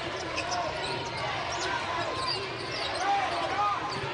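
A basketball being dribbled on a hardwood court, with a background murmur of voices in the arena.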